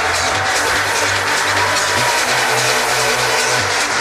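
Electronic dance music mixed live by a DJ over a club sound system: a sustained bassline with ticking hi-hats, the bass stepping up to a higher note about two seconds in and dropping back near the end.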